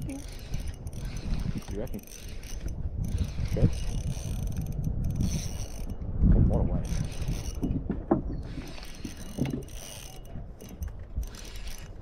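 Spinning reel working under heavy load from a hooked jewfish (mulloway), the drag clicking and the reel mechanism grinding as the fish pulls line.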